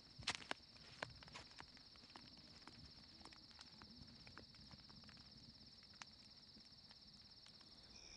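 Faint, steady high trill of crickets at night, with scattered soft clicks, a few of them slightly louder in the first second.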